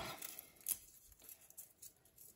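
Dried rose petals crushed and crumbled between fingers into a bowl of bath salts: faint, irregular crackling, with one sharper crackle under a second in.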